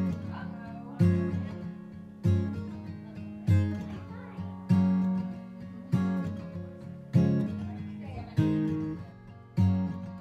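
Background music: an acoustic guitar strumming a chord about every 1.2 seconds, each chord left to ring and fade before the next.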